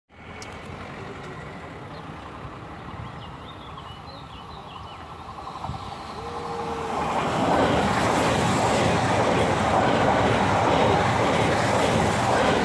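A two-unit AGC regional train passing at speed: a faint rumble on approach swells from about six seconds in into loud, steady wheel-on-rail rolling noise as the train goes by.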